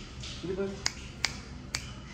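Three sharp snapping clicks about half a second apart, made by a person to call a kitten, after one short spoken syllable.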